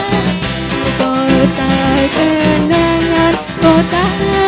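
Live band music: a drum kit keeping a steady beat under guitars and electric bass, with a female lead vocal holding long notes.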